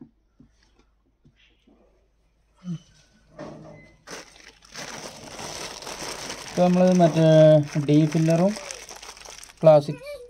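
Thin plastic bag crinkling as it is handled over a tin, a long rustle running about five seconds in the second half, with a voice heard over it for a couple of seconds.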